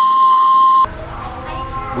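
Kue putu cart's steam whistle: one loud, steady high whistle over a hiss of escaping steam, cutting off abruptly less than a second in.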